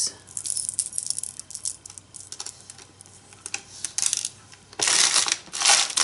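Loose stone and metal beads clicking and clattering as they are handled and rummaged through in a plastic tub, with small scattered clicks and two louder spells of clatter near the end.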